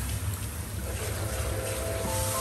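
Water hissing steadily from a salon hand-held shower sprayer onto a client's hair and splashing into the shampoo basin.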